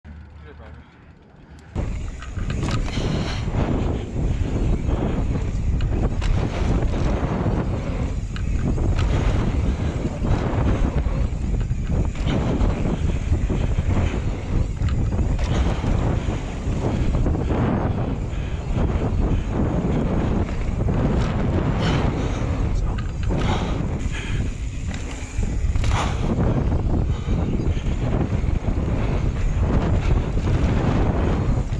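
Wind buffeting the microphone of a mountain biker's camera on a fast descent down a dirt singletrack, mixed with tyre rumble on the dirt. It starts suddenly about two seconds in and stays loud and gusty, with no let-up.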